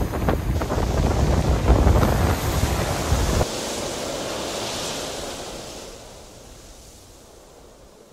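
Waves breaking and washing on a beach, with strong wind buffeting the microphone. The wind rumble cuts off suddenly after about three and a half seconds, leaving the hiss of the surf, which fades away toward the end.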